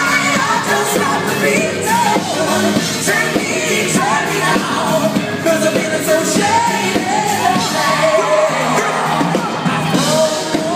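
Live pop-rock band playing loudly with a male lead vocalist singing into a handheld microphone, heard from the audience in a concert hall.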